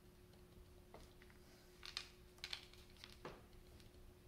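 Quiet, light clicks of small plastic beads being handled and threaded by hand, a few soft taps about two, two and a half and three seconds in, over a faint steady hum.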